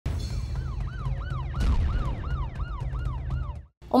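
A fast yelping emergency siren, its pitch rising and falling about three times a second, over a low rumble, cutting off abruptly just before the end: an intro sound effect for a police news report.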